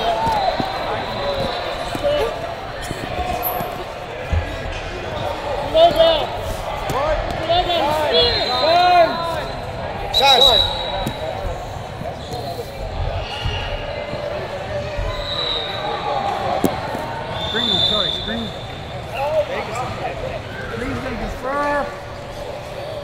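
Busy wrestling hall: many voices of coaches and spectators echo together, with repeated short squeaks of wrestling shoes on the mat. A couple of short high tones stand out, about halfway through and again near the end.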